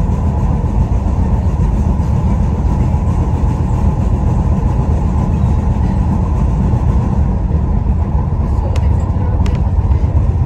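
Tyne and Wear Metro Class 994 Metrocar running at speed, heard from inside the car as a steady low rumble of wheels and traction. Two short sharp clicks come near the end.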